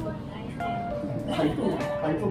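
Background music with steady melodic notes, and a man's voice speaking briefly in the second half.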